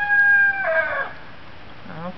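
A rooster crowing: one long held note that falls away at the end and stops about a second in.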